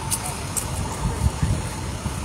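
Low outdoor background rumble on a phone microphone, with irregular low thumps and a faint steady tone.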